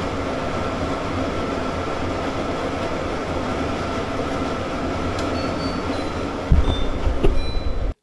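Winix 5500-2 air purifier's fan running at its top speed (speed 4), a steady rush of air with a faint hum. Low thuds and rumbling come in about a second and a half before the end.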